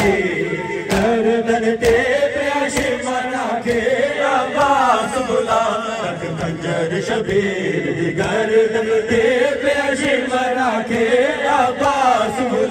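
A voice chanting a noha, a sung mourning lament, in a long wavering melodic line, with a couple of sharp hits in the first two seconds.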